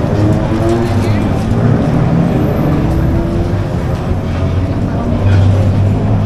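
Busy city street ambience: road traffic running close by under a steady low rumble, with the chatter of people walking past.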